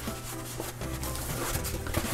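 Hands rubbing and handling a black EVA foam mask held up close to the microphone: soft, continuous scuffing over a low steady hum.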